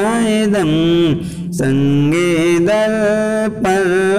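A man's voice chanting a Salat-o-Salam, the devotional salutation to the Prophet, melodically in long held, wavering notes that slide between pitches. There is a short break between phrases about a second and a half in.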